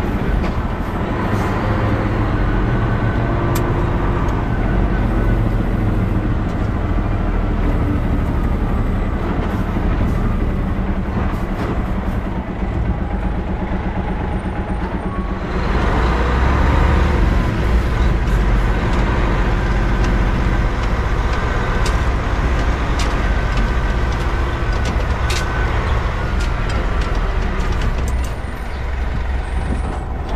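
Hino Profia semi-tractor's diesel engine running as the truck drives along with a flatbed trailer, together with road noise. The engine gets louder about halfway through, and there are a few light rattles.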